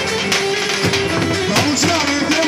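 Live folk dance music: a davul, the big double-headed bass drum, beaten with a heavy stick in an uneven dance rhythm under a held, wavering melody line.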